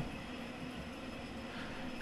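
Steady, low background noise with no distinct events: the recording's room and microphone hiss during a pause in speech.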